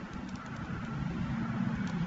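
Steady background rumble and hiss in a pause between speech, with light computer-keyboard typing.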